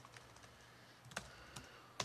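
Faint typing on a laptop keyboard: a few scattered keystrokes, the sharpest about a second in, as a terminal command is entered.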